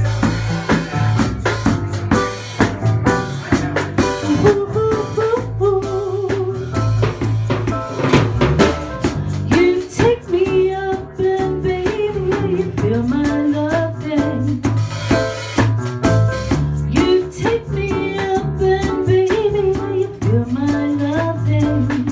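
Live band playing a song, with a drum kit keeping a steady beat under a bass line and a wavering melody line.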